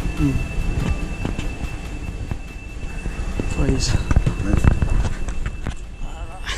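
Passengers' voices talking inside a crowded train carriage, with scattered knocks and clatter as people move along the aisle, over a steady low rumble and a thin steady high tone.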